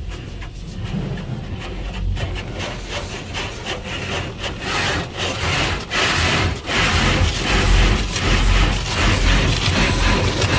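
Cloth wash brushes of an automatic tunnel car wash scrubbing and slapping against the car's body and glass along with water spray, heard from inside the car; the scrubbing grows louder about halfway through.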